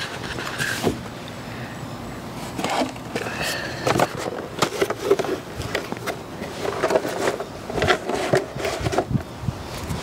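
Scattered light knocks and rustling as things are handled in a golf cart.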